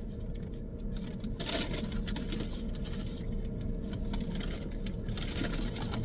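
Paper takeout bag rustling and crinkling in short bursts as a hand rummages inside it, over a steady low hum inside the parked car.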